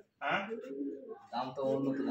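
Domestic pigeons cooing in their cages: low, drawn-out coos in two short stretches.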